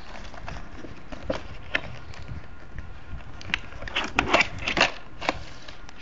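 Clear plastic packaging being handled and pulled open, giving irregular clicks and crinkles, with a cluster of sharper snaps about four to five seconds in.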